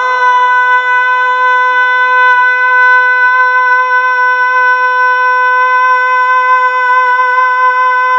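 A man singing a Bengali gojol holds one long, high note without a break, steady in pitch throughout, into a microphone.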